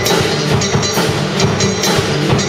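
Live drum-and-bass jam: a Yamaha drum kit and an electric bass guitar playing a steady groove together, the bass notes running underneath regular cymbal strokes about twice a second.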